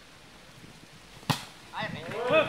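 A single sharp smack, a volleyball struck by hand, about a second and a half in, followed shortly after by voices calling out.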